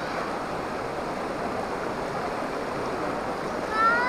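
Shallow river water rushing steadily over a rock ledge and around people's legs. A voice cuts in briefly near the end.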